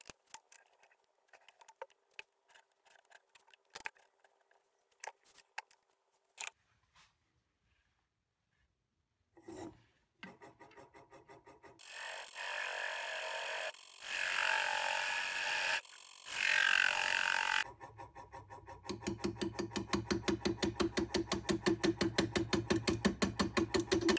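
A wood lathe spins an off-centre-mounted yellowwood disc while a carbide turning tool cuts grooves into it. After several seconds of near quiet with faint clicks, the cut sounds in three short bursts of a second or two. Near the end it becomes a rapid rhythmic pulsing, because the tool meets the off-centre wood once each turn and cuts air in between.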